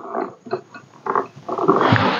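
A leather quiver being handled and turned over in the hands, with scattered rustling and rubbing. Near the end comes a longer, louder sound with a low hum-like tone, like a drawn-out murmur.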